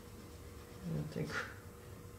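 A man's voice briefly saying "I think" about a second in, over faint room tone with a faint steady hum.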